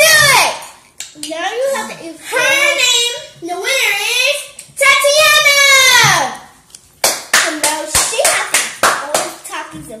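Young girls' high voices in long, drawn-out cries for the first six seconds, then quick hand clapping, about four to five claps a second, over the last three seconds.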